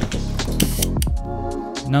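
Background music with steady sustained tones, with a few sharp clicks and a short burst of noise about a third of the way in.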